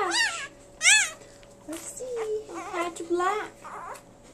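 Newborn Old English Sheepdog puppy crying: several short, high, rising-and-falling squeals, the loudest about a second in.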